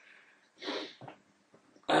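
A man's breath in a pause between sentences: one soft audible inhale about halfway through, a brief smaller sniff just after it, then his speech starts right at the end.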